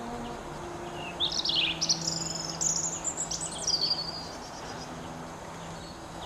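A songbird sings one rapid, varied phrase of high trills and whistles, about three seconds long, starting about a second in. A faint steady low hum runs underneath.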